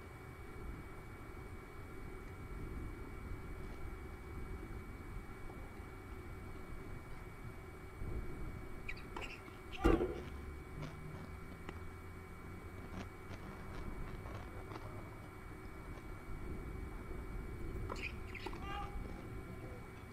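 Outdoor court ambience: a steady low rumble, with one sharp knock about ten seconds in and a few faint taps a few seconds later. Short high calls come twice, around the knock and near the end.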